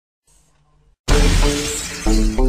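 Opening of a DJ mix: a faint low tone for the first second, then a loud, sudden crash-like sound effect about a second in, with sustained musical notes ringing under it as it fades.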